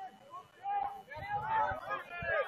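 Distant, indistinct shouted voices calling out, with a short call just before a second and a longer one from about a second in, over faint background chatter.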